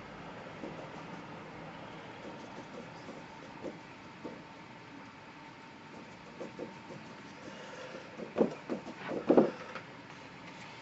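Quiet tapping and handling sounds of a paintbrush and palette as watercolour paint is mixed. Near the end comes a quick cluster of several louder knocks.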